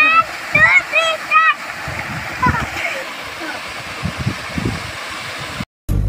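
Small waterfall pouring steadily into a pool, with several short, high-pitched shouts in the first second and a half. The sound cuts out briefly just before the end.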